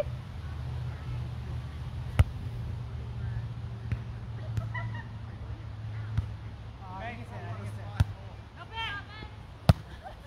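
Volleyball being struck by players' hands and forearms during a rally: sharp single slaps, the clearest about two seconds in, near eight seconds and, loudest, just before the end.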